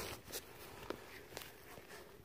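Faint footsteps on brick pavers: a few soft steps about half a second apart.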